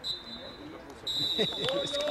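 Referee's pea whistle: a short blast, then a long held blast from about a second in, in the short-short-long pattern of the full-time whistle, with players shouting on the pitch.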